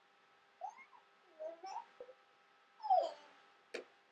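Three or four short, faint whines from an animal, each gliding in pitch, with a sharp click near the end.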